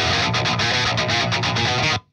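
Distorted electric rhythm guitar playing a heavy riff through the Neural DSP Fortin Nameless amp-simulator plugin with every control set flat. The tone is a little thin and a little abrasive, and the playback stops suddenly at the end.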